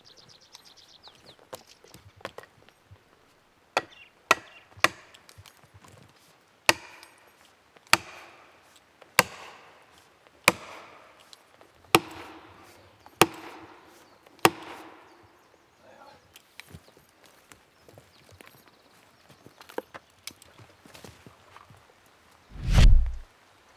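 An axe hammering plastic felling wedges into the back cut of a large spruce to tip the back-leaning tree toward the felling direction. About ten sharp strikes: three in quick succession about four seconds in, then seven heavy blows roughly every second and a quarter, each with a short ring from the trunk.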